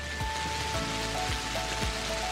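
Rainfall sound effect, a steady hiss of heavy rain, over background music with held notes and a soft low pulse about twice a second.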